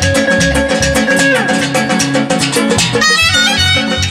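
Live Azerbaijani band music: clarinet and electric guitar over a steady drum rhythm. A long held note slides down about a second in, and a quick run of high notes starts near the end.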